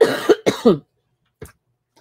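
A woman coughing: three coughs in quick succession in the first second, a harsh one followed by two shorter ones that fall in pitch.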